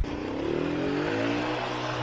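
Small single-cylinder moped engine running, its pitch swelling and then easing off as the rider works the throttle.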